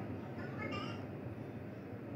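Short, high-pitched animal calls, twice in the first second, over a steady low background noise.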